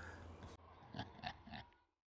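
A faint, short chuckle in three quick pulses, then the sound cuts to dead silence.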